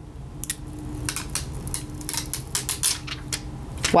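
Fingernails picking and scratching at the metal nameplate on a thick cardboard eyeshadow-palette box, making a string of small, irregular crackling clicks.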